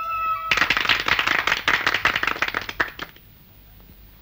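A small group of people applauding, with quick irregular claps that start suddenly and die away after about two and a half seconds. A held music chord ends just as the clapping begins.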